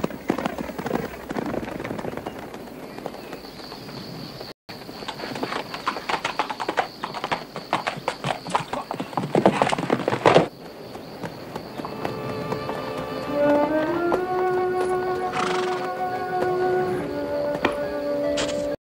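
Hooves of several horses galloping, a dense clatter that stops abruptly about ten seconds in. Then an orchestral film score plays, with a climbing figure and held notes.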